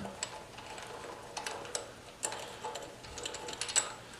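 Faint, scattered small metallic clicks and ticks as the float-bowl bolt on a small engine's carburetor is unscrewed by hand and the bowl is worked loose.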